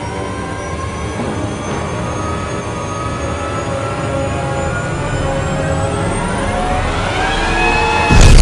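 Film trailer soundtrack: a swelling, ominous drone of many held tones over a deep rumble, slowly rising in pitch and growing steadily louder.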